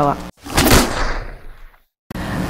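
A single edited whoosh sound effect marking a section transition: a noisy swell that peaks quickly and fades over about a second, cut off into dead silence.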